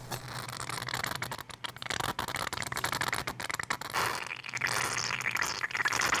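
Plastic squeeze bottle of ketchup squeezed hard onto a plate of scrambled eggs: a long, continuous squirt made up of rapid wet clicks and spluttering, slightly stronger near the middle.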